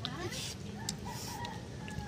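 A chicken calling faintly, with one long call held on a single note about a second in.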